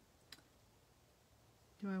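A single short, sharp click about a third of a second in, from small cardstock pieces being handled on a craft mat; otherwise quiet room tone.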